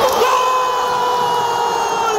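Football stadium crowd cheering, with one long steady high note held over the noise, starting just after the beginning and lasting almost to the end.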